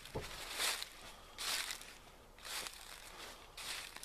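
Footsteps crunching through dry fallen leaves, four slow steps about a second apart.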